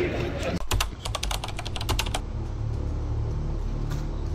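A quick run of keyboard-typing clicks, about a dozen over a second and a half, starting just after a brief drop-out, as a typing sound effect for an on-screen caption. A low steady drone runs underneath.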